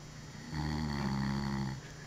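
A sleeping man snoring: one low, steady-pitched snore lasting just over a second, starting about half a second in.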